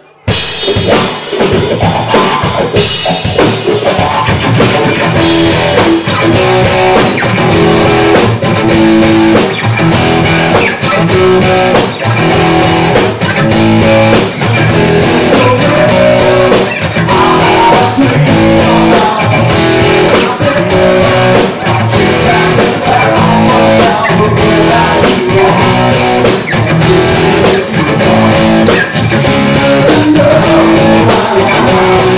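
Live rock band starting a song with a sudden loud entry: electric guitars and drum kit playing together, with a steady, even drum beat setting in about six seconds in.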